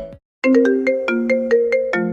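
A remixed pop-song ringtone: the music cuts out briefly just after the start, then a melody of short plucked notes, about four a second, plays with no bass underneath.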